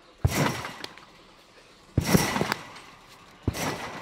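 Acon garden trampoline bed and springs taking three bounces, about a second and a half apart. Each bounce is a sharp thud followed by a short noisy tail.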